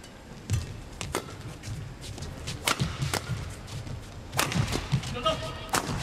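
Rackets striking a badminton shuttlecock in a fast doubles rally: a string of sharp, irregularly spaced hits, some less than half a second apart.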